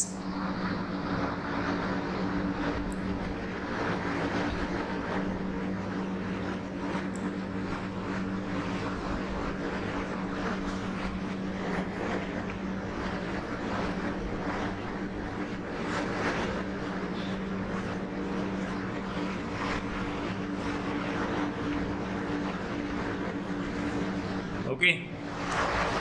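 A machine hum running steadily and evenly, a constant low drone over a hiss, like a motor running without change.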